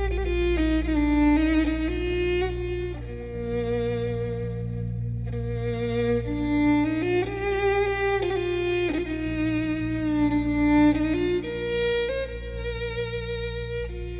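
Violin playing a slow melody of long held notes with vibrato, over a low steady drone. It is the instrumental opening of the song.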